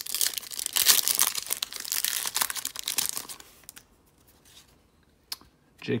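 The wrapper of an O-Pee-Chee Platinum hockey card pack being torn open by hand and crinkled, a dense crackling that lasts about three and a half seconds. A single click follows near the end.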